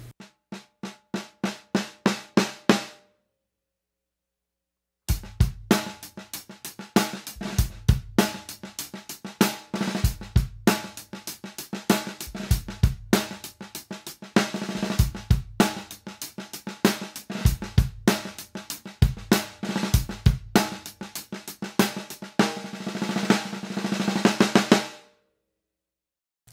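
Snare drum fitted with PureSound Equalizer 16-strand snare wires (medium-gauge wires on a 20-strand end clip with the middle four strands left out), tensioned just below the point where they choke. It opens with single snare strokes, about four a second, growing louder. After a two-second pause comes a drum-kit groove with bass drum that runs until just before the end.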